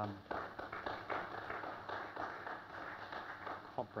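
Audience applauding: a burst of clapping that starts suddenly and dies away over about three seconds.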